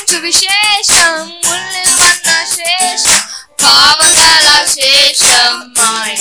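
Two boys singing a devotional song together into microphones, accompanied by a Yamaha PSR-S775 arranger keyboard playing chords over a beat. The sung notes are held with vibrato.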